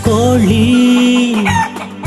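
A rooster crowing once: one long, held call that dips at the start and falls away near the end, with the song's beat dropped out beneath it.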